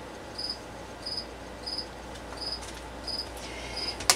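A cricket chirping steadily, short high chirps about three every two seconds, over a low steady hum.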